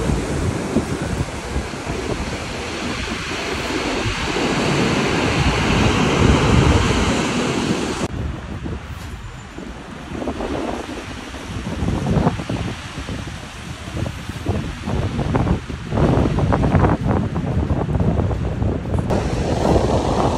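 Heavy storm surf crashing and washing over a seafront embankment, with strong wind buffeting the phone's microphone. About eight seconds in, the sound changes to separate loud wave crashes over a lower roar.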